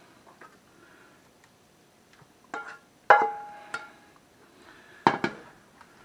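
Sharp knocks and clinks of a slotted plastic spatula and a skillet as meat topping is scraped out of the skillet into a foil baking pan. A few strikes come from about two and a half seconds in, one of them ringing briefly, and a last pair near the end.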